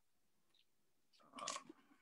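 Near silence, broken a little past halfway by a brief, soft crackling rustle lasting about half a second.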